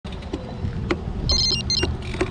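A bicycle rolling with a low rumble and a few sharp clicks, and a brief high trill of a bicycle bell in the second half.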